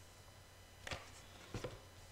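Tarot cards being laid down on a cloth-covered table: a few faint taps and slides, about a second in and again near a second and a half, over a low steady room hum.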